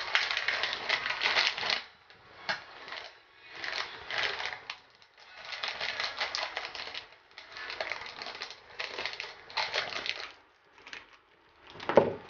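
Plastic instant-ramen packet crinkling in a series of rustling bursts, each a second or two long with short pauses between, as it is handled and cut open with scissors.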